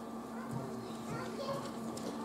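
Faint murmur of young people's voices chattering in the audience between pieces, over a steady low hum.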